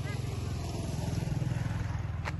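A small engine running steadily at idle, a low, rapid, even pulsing.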